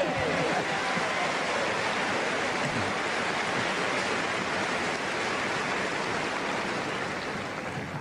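A steady rushing noise with no distinct hits or tones in it.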